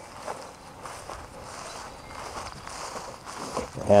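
Footsteps walking through grass, with a soft rustle.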